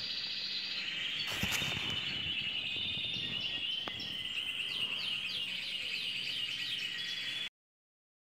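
Caged canaries and goldfinches singing, a continuous run of rapid trills and chirps. There is a brief knock about a second and a half in, and the song cuts off suddenly near the end.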